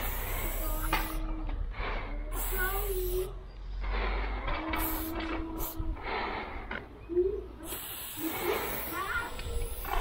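Aerosol spray-paint can hissing in several short bursts, the last and longest near the end, as paint is sprayed onto a wall.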